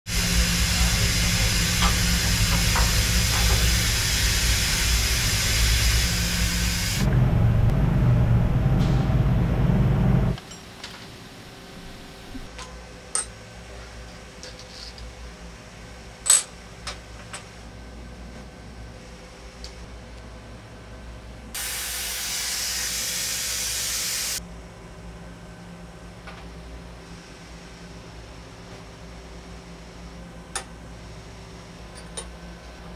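Steel toe clamps and fixturing hardware clinking and tapping against a steel machine table, with one sharp metal clink just past halfway. A loud, steady hiss with a low hum fills roughly the first third, and a second, shorter hiss of about three seconds comes about three-quarters of the way through.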